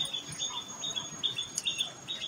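Small birds chirping: a quick, even series of short high chirps, about four a second.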